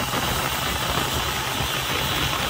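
Turbocharged diesel engine of a longtail boat running steadily at speed, mixed with a steady rush of wind and spray.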